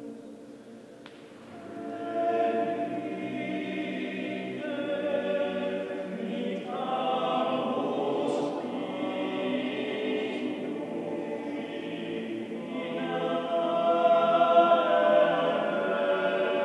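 All-male a cappella choir singing sustained chords in low and middle voices, with a long cathedral reverberation. The sound is quieter at first, swells about two seconds in, and grows loudest near the end.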